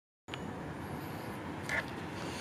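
Steady low rumble of outdoor background and distant traffic, starting a quarter-second in, with a brief high-pitched chirp near the end.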